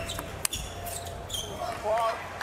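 Table tennis ball clicking off paddles and the table in a doubles rally, a few sharp clicks in the first half second, then the rally ends and a shout rises near the end.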